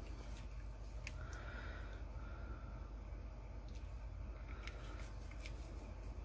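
Faint handling sounds over a low steady hum: a few light clicks and three short soft scrapes as a small alcohol ink bottle is squeezed over a plastic cup of epoxy resin with a wooden stir stick in it.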